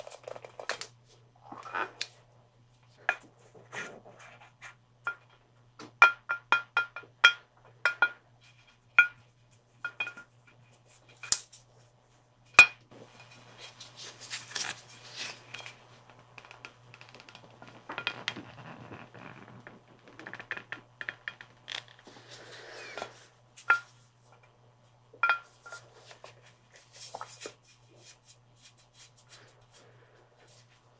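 Taps and clinks on a glass skull-shaped bottle, each with a short ringing glassy tone, coming in quick runs and single strikes. From about 14 to 23 seconds there is a softer swishing and rubbing against the glass.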